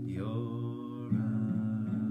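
A man singing with his own acoustic guitar: a held sung note over a ringing chord, then steady strumming starts again about a second in, about two strums a second.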